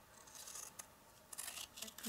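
Scissors cutting through cardstock, faint: one short cut about half a second long, then a few quick snips near the end.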